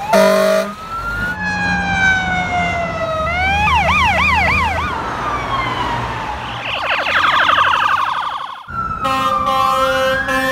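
Fire apparatus sirens and horns: a short horn blast, then an electronic siren winding up and down in a wail and switching to a fast yelp. After an abrupt cut, steady horn tones sound over a falling siren wail near the end.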